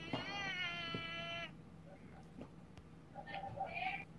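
A long meow-like call, held about a second and a half and falling slightly in pitch, then a shorter one near the end.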